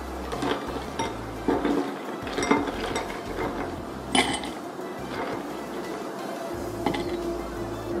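Ice cubes dropped by hand into a thick glass mug, clinking against the glass several times, the loudest about four seconds in. Background music plays underneath.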